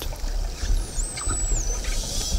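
Underwater ambience in the bait ball: a steady rush of water noise over a low rumble, with a faint high whistle that rises, holds and falls about a second in.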